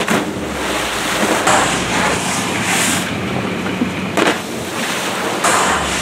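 Pool water splashing and churning as a skier lands from a water-ramp jump, under steady wind noise on the microphone with several louder gusts.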